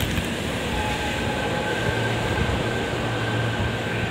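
JR Central electric commuter train moving along the platform: a steady rumble of wheels and motors with a faint, steady high whine.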